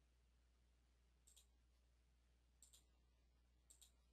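Faint computer mouse clicks over near silence: three quick pairs of clicks, about a second apart.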